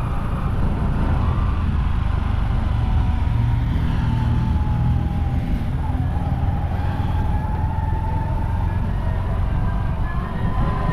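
Steady rumble of a moving vehicle, engine and road noise heavy in the low end, with a faint steady whine above it.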